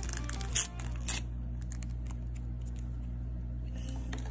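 Paper and tape crackling a few times in the first second or so as stickers are pulled from a taped-down paper backing, over steady quiet background music.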